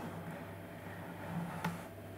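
Quiet room tone: a steady low hum, with one faint click near the end.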